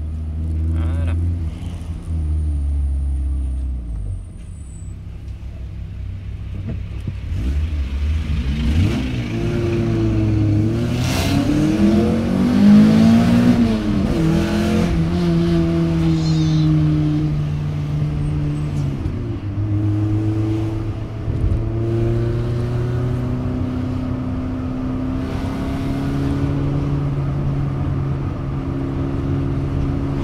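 Peugeot 405 Mi16's 16-valve four-cylinder engine heard from inside the cabin while driving. It climbs in pitch as it accelerates, drops at gear changes about halfway through and again a little later, then holds a steady cruise.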